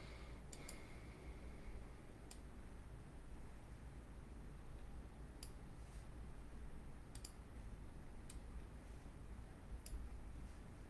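Quiet room tone with a steady low hum, broken by about eight faint, sharp clicks at irregular intervals, a couple of them in quick pairs.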